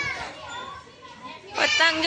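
Children's voices calling and shouting while they play, with a high call at the start, quieter voices in the middle, and a loud voice starting about a second and a half in.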